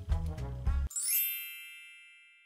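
Background music with a bass line stops about a second in, and a bright shimmering chime sound effect takes over: a quick upward sparkle that then rings on as a cluster of high tones, slowly fading.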